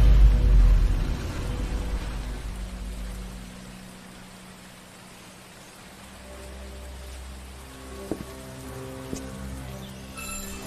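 Soundtrack of an animated series: a deep rumble fades away over the first few seconds under a steady hiss like rain, then soft held music notes come in about six seconds in.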